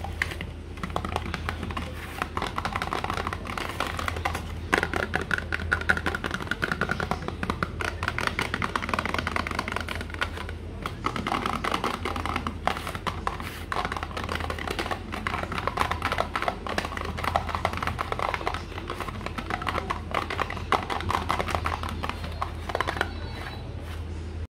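Fingertips and nails tapping rapidly on a cardboard vitamin box, a quick, continuous patter of light taps.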